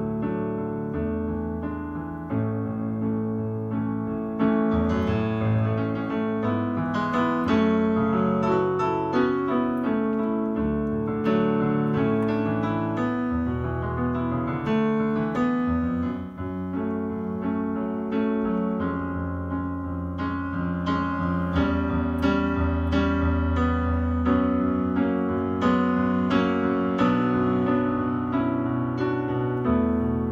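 Solo piano playing on a digital piano: full two-handed chords over held bass notes, continuing without a break apart from a brief dip in loudness about halfway through.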